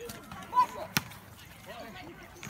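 Children's shouts and chatter during mock combat with padded weapons, with a short loud yell about half a second in and one sharp knock about a second in, a weapon striking a shield.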